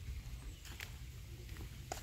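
Faint footsteps on a sandy park path, a couple of light scuffs over a low rumble on the phone's microphone.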